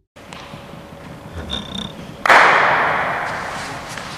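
A single loud bang about two seconds in, echoing through a large sports hall and dying away slowly, over faint hall room noise. A brief high squeak comes just before it.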